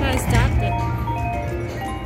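Video slot machine playing its electronic sound effects during a spin: a quick swooping chirp at the start, then a run of short tones at different pitches, over a steady low hum.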